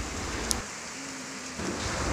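Steady rain falling on a wet street, an even hiss with a single small click about half a second in.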